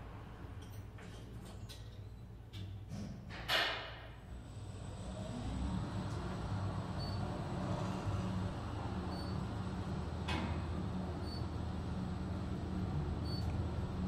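KONE-modernized traction elevator: the car doors finish closing with a few clicks and a brief thump about three and a half seconds in. The car then travels upward with a steady low hum and a thin high whine, and faint short beeps come about every two seconds.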